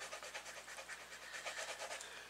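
Prismacolor coloured pencil rubbing on paper in quick back-and-forth strokes, a faint run of scratchy strokes several a second.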